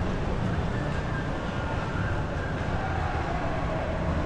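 Steady low rumble of outdoor city background noise, traffic and crowd blended together, with faint drifting tones above it.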